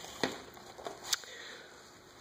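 Quiet room tone with two faint short clicks, one about a quarter second in and one just after a second in.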